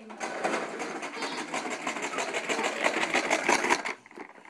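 Child's toy push lawn mower clattering as it is pushed along, its wheel-driven mechanism making a rapid run of clicks that stops abruptly as the mower halts.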